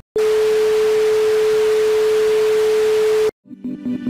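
An outro transition sound effect: a single steady mid-pitched electronic tone over loud static hiss, like a broadcast test tone, that cuts off abruptly after about three seconds. After a short gap, electronic music starts near the end.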